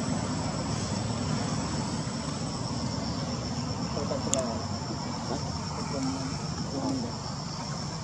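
Outdoor ambience: a steady low rumble under a continuous high insect drone. Brief faint wavering calls come about four seconds in, with one sharp click just after.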